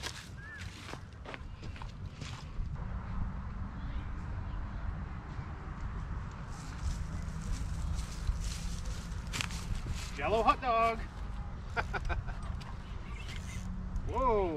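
Wind buffeting the microphone in a steady low rumble, with a few sharp clicks and a short voice sound about ten seconds in.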